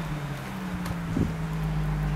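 Infiniti G35's 3.5-litre V6 idling steadily at the exhaust tip, with one short blip a little over a second in.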